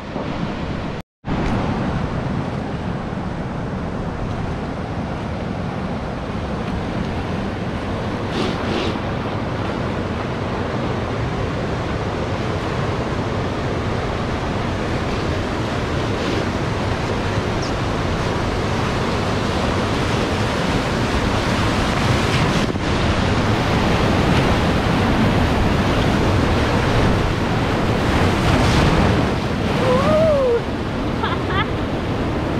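Whitewater of a river rapid rushing steadily around a raft as it runs into the rapid, growing louder toward the end as the waves break over the boat. A brief dropout to silence about a second in.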